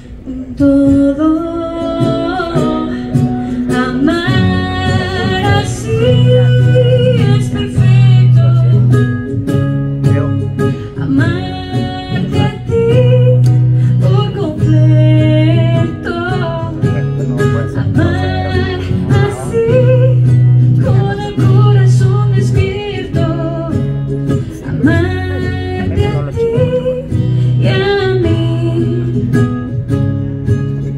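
A ukulele and an acoustic guitar playing a song live, with singing over them and a repeating low note pattern underneath.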